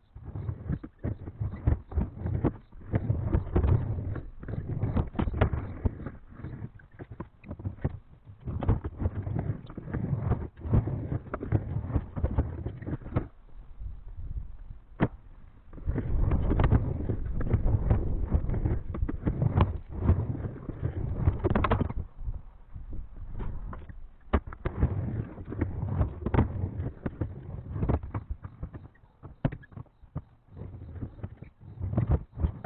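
Skateboard wheels rolling over a plywood bank ramp, a low rumble broken by frequent sharp clacks of the board and feet on the wood. The rolling drops away for a couple of seconds about halfway through, then comes back at its loudest, ending in a loud clack a little past two-thirds of the way.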